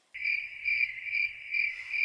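Cricket chirping, edited in as a sound effect: a steady high trill that pulses about twice a second, starting and cutting off abruptly.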